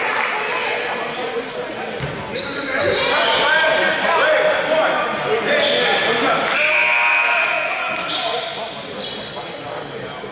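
Basketball gym sounds echoing in a large hall: indistinct shouting and talk from players and spectators, a basketball bouncing on the hardwood, and short high sneaker squeaks on the court floor.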